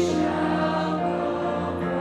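Choir of many voices singing sustained notes, shifting to a new chord about a second in.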